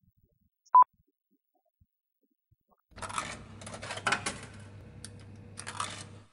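The gap between two tracks: a short, loud beep about a second in, then near silence, then from about three seconds a steady low hum with crackles and clicks leading into the next recording.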